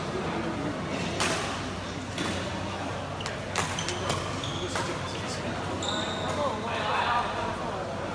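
Badminton rally: several sharp racket-on-shuttlecock hits about a second apart, with brief high squeaks of court shoes on the gym floor.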